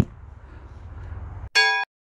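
A low, steady outdoor rumble that cuts off abruptly about one and a half seconds in, replaced by a short, bright bell-like ding. The ding is a sound effect edited in over a caption card and is followed by dead silence.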